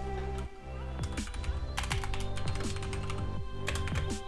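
Computer keyboard typing: two short runs of keystrokes, one in the middle and one near the end, over background music.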